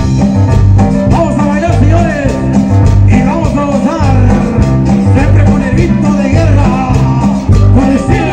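Live dance band playing upbeat Latin dance music, with a steady repeating bass line under a bending melodic lead.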